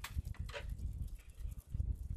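A pack of small dogs on leashes, with their walker, moving over paved ground. Their paws and her footsteps make irregular soft thuds, with a couple of brief sharp higher sounds in the first half second.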